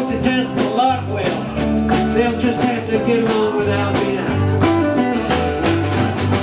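A live band playing a rock-and-roll song: acoustic and electric guitars over a steady drum-kit beat.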